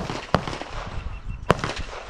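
Three sharp gunshots, each followed by a short smear of echo: one right at the start, one about a third of a second later, and one about a second and a half in.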